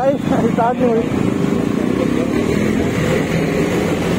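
KTM Duke 390's single-cylinder engine running steadily as the bike moves off slowly, with a short burst of voice in the first second.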